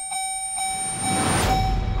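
A steady, buzzing tone runs under a whooshing swell that builds, peaks about a second and a half in, and fades, with a low rumble underneath: a trailer sound-design transition.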